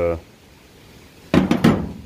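Aluminum wheel spacer with lug studs set down on a painted steel truck bed: three quick metallic knocks, with a clatter of the studs, a little over a second in.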